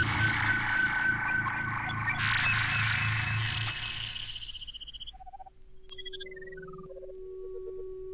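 Electroacoustic music for clarinet and tape. A dense, noisy tape texture over a low pulsing drone thins out and fades by about the middle. It gives way to sparse pitched notes, a short run of blips stepping downward over a single held tone.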